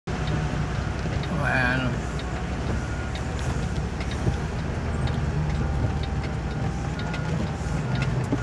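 Vehicle engine running with a steady low rumble, heard from inside the cab while creeping along in slow traffic. A brief voice sounds about one and a half seconds in.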